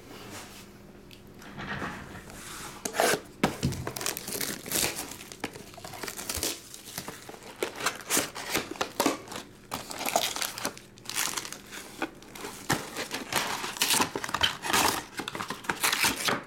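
Plastic shrink wrap being torn off a trading-card box and crumpled in the hands, a run of irregular crinkling and tearing rustles that starts after a quiet second or two.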